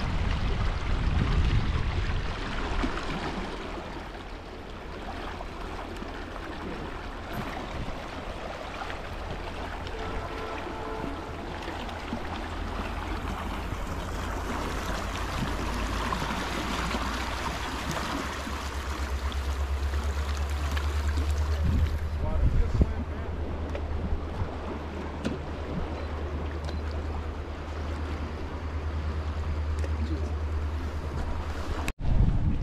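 Fast river current rushing past a rocky bank, with wind buffeting the microphone as a low rumble that gets heavier in the second half.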